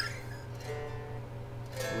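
Electric guitar chord struck and left ringing, a single held note sounding in the middle, and another chord strummed near the end, over a steady amplifier hum.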